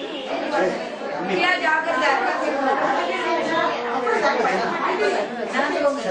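A crowd of women's voices chattering at once, several talking over one another, with the echo of a large hall.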